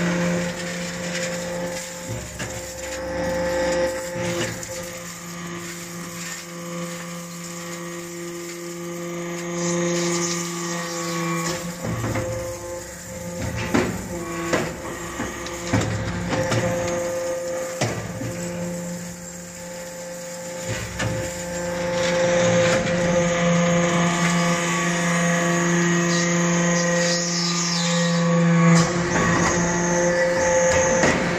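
Hydraulic swarf briquetting press running: a steady hum from its hydraulic drive that drops out for a few seconds near the middle and returns. Metal chips clatter into the feed hopper, with scattered knocks.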